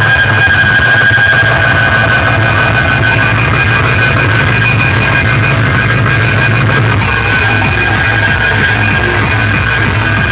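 Very loud music blasting from a DJ sound rig of stacked horn loudspeakers and bass cabinets, at a constant, near-full level: a heavy bass under bright tones held steadily high above it.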